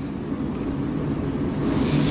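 A steady rumbling, rushing noise that grows slightly louder and hissier near the end.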